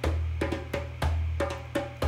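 Rhythmic percussion music: a deep drum booming about once a second under quicker, lighter wooden-sounding taps, about three to four a second, in a steady beat.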